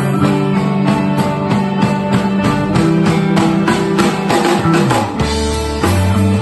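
Live rock band playing an instrumental passage: electric guitars and bass over a drum kit keeping a steady beat. Near the end the drums stop and a note slides down into a held low note.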